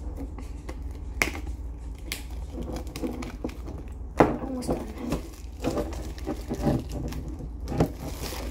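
Plastic shrink-wrap crinkling and crackling as it is picked and pulled at on a metal Pokémon card tin, with a few sharp clicks, the loudest about four seconds in.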